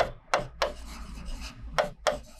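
Chalk scratching on a blackboard as a formula is written: a few short strokes and one longer stroke lasting about a second.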